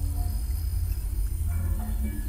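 Steady low rumble with a few faint, held electronic tones, the robot performance's soundtrack playing over the hall's speakers.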